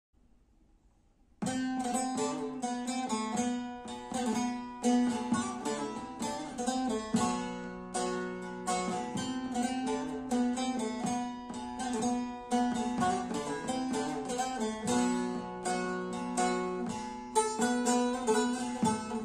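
Long-necked Turkish bağlama (saz) played solo: a quick plucked instrumental introduction to a folk melody, starting about a second and a half in, over a steady low drone from the open strings.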